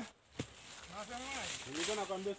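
Indistinct talking, with a single sharp snap about half a second in.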